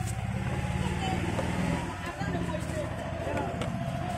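Steady low motor rumble with voices in the background, and faint rustling and clicks from a newspaper cone being handled.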